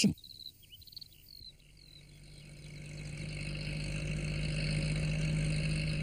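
A small van's engine approaching, a steady hum growing louder over several seconds, with a few faint bird chirps near the start.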